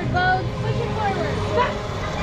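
High-pitched children's voices calling and squealing in short bursts, over a steady low hum from the kiddie airplane ride's machinery.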